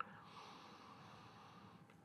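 A faint, long sniff through the nose with the nose held in a glass of stout, drawing in its aroma; a short tick comes just at the start.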